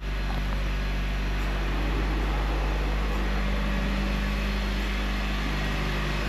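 A steady mechanical hum over a low rumble, constant in level throughout.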